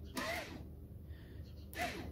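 A man's short breathy vocal sounds: a gasp-like breath about a quarter second in and another brief one near the end, both faint.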